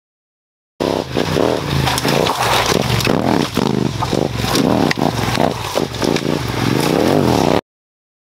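Yamaha Ténéré 700's parallel-twin engine revving up and down over and over as the bike is ridden off-road on a rocky trail, with sharp clatter of stones under the tyres. It starts abruptly about a second in and cuts off suddenly near the end.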